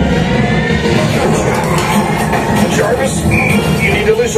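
Simulator ride's film soundtrack played loud over the cabin speakers: action music layered with sound effects, several quick sweeping effects in the second half.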